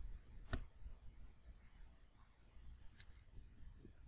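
Two small sharp clicks, one about half a second in and a fainter one about three seconds in, from a connector being worked loose on an opened tablet's logic board as its battery is unplugged. A steady low hum runs underneath.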